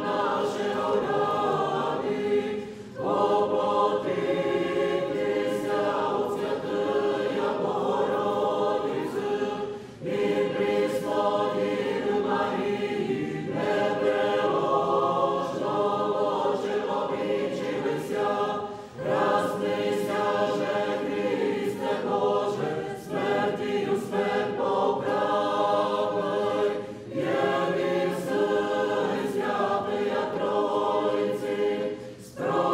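Church choir singing Orthodox liturgical chant unaccompanied, in long sustained phrases with brief breaks between them.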